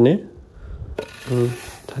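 Paddy being raked with a metal rake: a steady rustling hiss, with a sharp metallic click about a second in and another near the end, under a man's voice.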